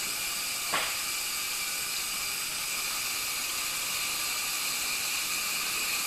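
Water hissing steadily through a partly opened supply valve into the whole-house filter housings as the sumps fill and pressurize. There is a short knock under a second in.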